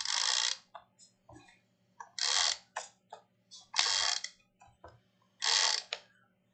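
E-Z Runner Grand adhesive tape runner drawn along the edges of a card, laying down tape in four passes of about half a second each, with faint clicks between.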